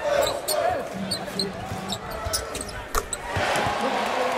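Live game sound in a basketball arena: a ball bouncing on the hardwood court and sneakers squeaking, over crowd voices. There is one sharp knock about three seconds in.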